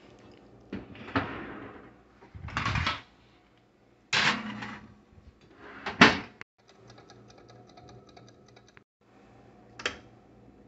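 Kitchen handling noises: a metal griddle pan clattering and scraping as it is put into an electric oven, with the oven door shutting with a bang about six seconds in. A run of fast faint clicks follows as a stove dial is turned, then a single click.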